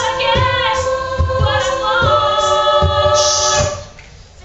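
A female a cappella group singing in close harmony, several held voice parts over a low pulsing beat. Near the end a hissing sound rises and the singing breaks off suddenly.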